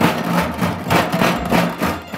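A metal tin box with a loose object inside, shaken hard by hand: a loud, rapid rattling and clattering of about four or five knocks a second.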